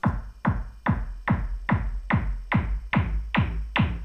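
Synthesized analog kick drum from a Roland SH-101, made by its filter swept down by the envelope, played back as a steady run of about ten hits, two and a half a second. Each hit is a sharp click whose pitch drops fast into a low boom.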